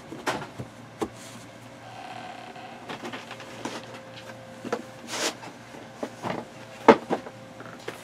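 Things being handled and moved about: scattered light knocks, clicks and rustles, the sharpest knock about seven seconds in, with a faint steady hum through the middle.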